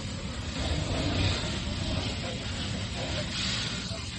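Steady low rumble with hissing from a burning pickup truck being doused with a fire hose, the water turning to steam on the fire.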